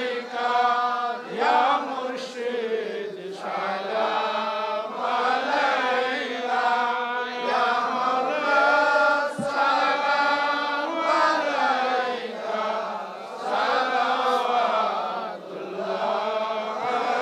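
Male voices chanting devotional Islamic praise to the Prophet in long, drawn-out sung phrases with short pauses for breath between them, amplified through microphones.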